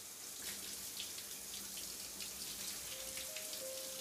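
Shower head spraying water, a steady hiss of falling spray that swells up at the start. Faint held notes come in near the end.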